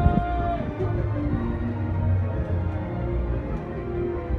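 Parade music playing over a float's loudspeakers, with a steady bass line and a held note near the start.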